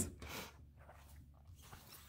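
Faint handling noise of paperback coloring books on a table: a brief soft rustle early on as one book is moved aside and another slid into place, then near silence.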